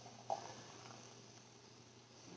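Faint pouring of thick, foamy blended hemp milk from a blender jar into a glass mason jar. One short soft glug comes about a third of a second in, then it fades to near silence.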